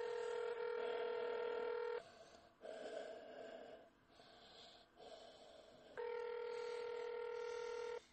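Telephone ringback tone on a phone line while a transferred call rings through: two steady two-second rings about four seconds apart.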